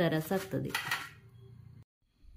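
A kitchen knife scrapes and clinks against a metal plate as it cuts through watermelon. There is one short, bright metallic scrape about a second in.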